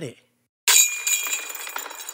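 A bright, glassy chime sound effect for a logo reveal. It starts suddenly about half a second in, rings with many high steady tones and fades slowly.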